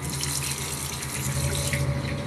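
Steady rushing, hissing noise over a low hum, with no distinct events.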